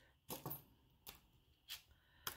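Three faint, short clinks of jewelry pieces knocking together as bracelets are pulled out of a jar, against near silence.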